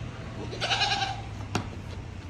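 A goat bleats once, a short call lasting about half a second. A single sharp click follows about a second and a half in.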